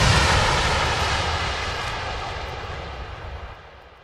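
The closing noise wash of an electronic dance track: after the last kick drum the beat stops and a long rushing noise fades steadily away over about four seconds.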